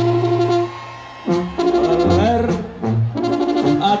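Live brass band playing held chords over a low bass note, with a short rising slide about halfway through and a fresh chord near the end, filling the gap between sung lines.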